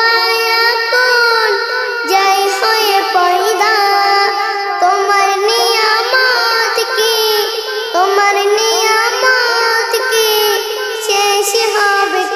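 A child singing a Bengali Islamic gazal (naat) in praise of Allah, one voice carrying a continuous melody with gliding notes.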